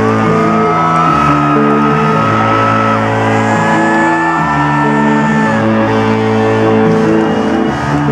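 Loud live electronic rock music through a concert PA: sustained synthesizer chords that change every second or so, with electric guitar notes bending upward in pitch.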